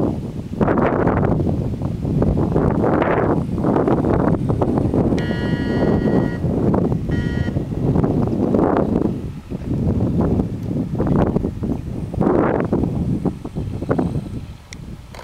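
Wind buffeting the microphone in gusts that swell and drop every second or two. A brief steady high-pitched tone sounds twice in the middle, about five and seven seconds in.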